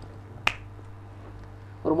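A single short, sharp click about half a second in, over a low steady hum. Speech starts again near the end.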